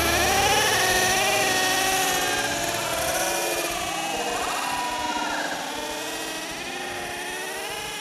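Several radio-controlled race cars' motors whining at once, their pitches rising and falling as they rev around the track. The sound fades gradually.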